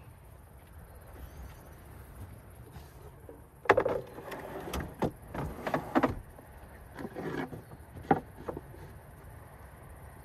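Plywood slide-out bed platform being folded away: a series of wooden knocks and thumps as the sections are pushed back in, starting about four seconds in, the first the loudest. A low wind rumble on the microphone runs underneath.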